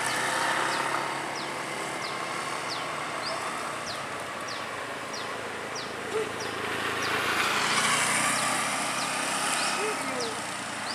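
Roadside background noise in a forest, with a short, high, falling chirp repeating about twice a second. The background noise swells between about seven and nine seconds in, as traffic passes on the hill road.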